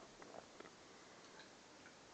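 Near silence with a few faint, scattered clicks: a Siberian husky licking and mouthing at an ice cream cone held out to it.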